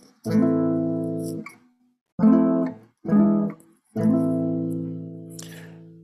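Acoustic guitar chords played one at a time: a chord just after the start that rings for about a second, two short chords about a second apart, then a final chord from about four seconds in left to ring and fade. The last three spell out a flat-six major seventh, dominant seventh, minor-tonic cadence in A minor (F major 7, E7, A minor).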